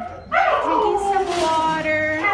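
Dog howling: one long, drawn-out cry that starts about a third of a second in and slowly falls in pitch.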